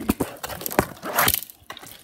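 Handling noise from a handheld camera being moved about: a string of knocks and clicks, with a louder rustling burst about a second in.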